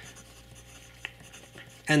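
A fountain pen's double-broad steel Bock nib moving across paper as letters are written, faint and continuous, with a single light tick about a second in.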